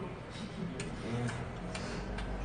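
Eating noises from two people having jjamppong noodle soup with chopsticks: a few short, sharp clicks and smacks of chewing and of chopsticks on bowls, over a low steady hum.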